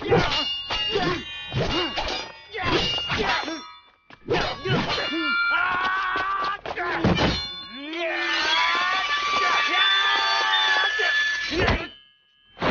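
Sword-fight sound effects: heavy blades clashing in a string of ringing metal clangs, mixed with the fighters' grunts and shouts. From about eight seconds in comes a longer stretch of dense, ringing metal that cuts off just before the end.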